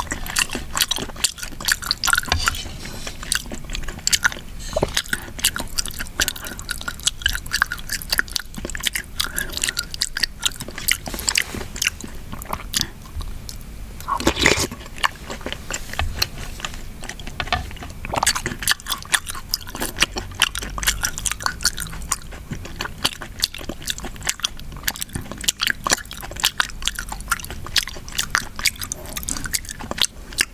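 Close-miked mouth sounds of someone eating mung bean porridge: wet chewing and lip smacks in a dense run of quick clicks, with a louder noise about halfway through.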